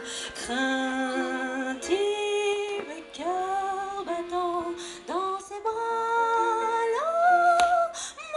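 A solo voice singing slowly into a hand-held microphone, holding long notes with vibrato and sliding up into most of them, with short breaks between phrases.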